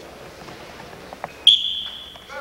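Two short knocks, then a shrill, steady, high-pitched signal tone that starts suddenly about one and a half seconds in and holds, over the murmur of a gym.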